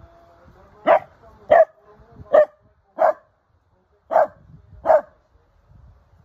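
A dog barking six times in short, separate barks, four in quick succession and then two more after a brief pause.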